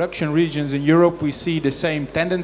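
Speech: a man talking.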